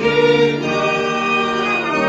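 A choir singing, several voices holding long sustained notes together.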